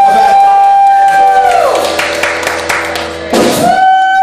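Live rock band with electric guitar and drums: a long held note drops in pitch about a second and a half in, followed by drum and cymbal hits. Near the end the sound dips, then comes a loud hit and another held note.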